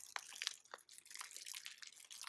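Foil wrapper crinkling in a gloved hand as a new oil filter cartridge is unwrapped: faint, irregular crackles.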